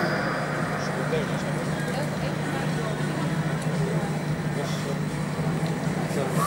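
Audience noise in a large hall: many voices murmuring and calling out at once, over a steady low hum.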